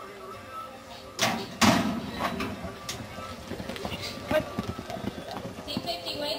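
Roping chute gate banging open, two sharp metal clangs a little over a second in, then the irregular thud of horses' hooves galloping on arena dirt as a steer is chased. Announcer talk and music are audible faintly over the PA.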